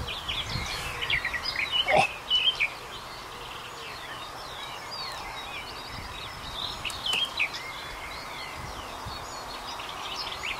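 Several birds singing in a chorus of short chirps and whistles, busiest in the first few seconds and again about seven seconds in, over a steady outdoor hiss. A short knock about two seconds in.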